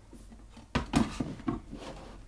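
A storage box with a wooden lid set down on a shelf: a knock about three-quarters of a second in, then several lighter knocks and scrapes as it is shifted into place.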